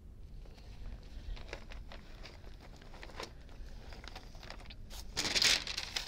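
Faint light handling taps and clicks, then a loud brief rustle of a parchment paper sheet being lifted and handled about five seconds in.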